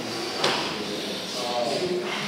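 Low, indistinct voices, with one sharp knock about half a second in.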